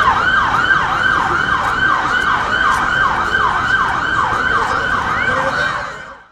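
Electronic emergency-vehicle siren in a fast yelp, each cycle a quick falling sweep in pitch, about three a second, fading out at the end.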